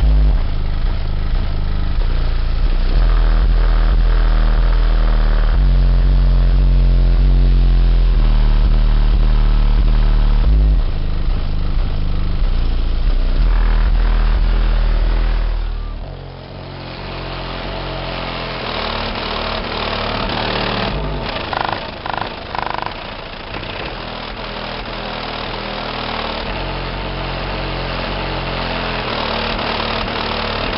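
AQ HDC3 subwoofer playing bass-heavy music very loud, its deep bass notes stepping from pitch to pitch every few seconds. About sixteen seconds in, the deep bass falls away and the sound turns thinner and quieter as it is heard from outside the car.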